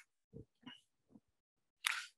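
Faint short vocal sounds from a person on a headset microphone, then a brief breath near the end.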